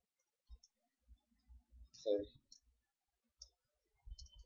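A few faint, scattered computer keyboard keystrokes, with a brief murmur of a man's voice about halfway through.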